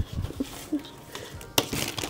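Quiet handling noise of items being moved on a worktable, with a brief click at the start and a short, sharper rustle about a second and a half in.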